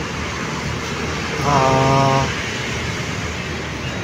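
Steady street traffic noise from passing cars and motorbikes. About a second and a half in, a man draws out a long hesitation sound for about a second.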